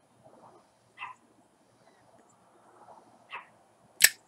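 Faint, soft puffs and lip pops of a man drawing on a tobacco pipe while holding a lighter flame over the bowl, a few short puffs spaced irregularly. A sharp click comes right at the very end.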